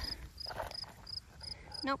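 Insect chirping outdoors: short high chirps repeating evenly, about three a second.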